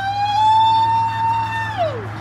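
A high-pitched voice holds one long shouted note for nearly two seconds. It glides up at the start and falls away at the end.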